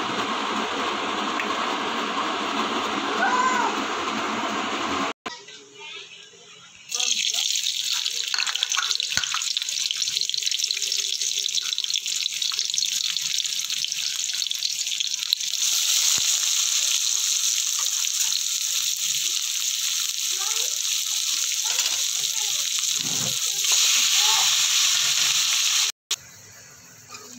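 Food frying in hot oil in a steel kadai: a steady sizzling hiss that gets louder about halfway through. It comes after a few seconds of a fuller rushing noise that cuts off abruptly.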